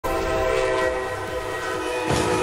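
Train horn sounding one long held blast, a chord of several steady tones over the low rumble of the passing train.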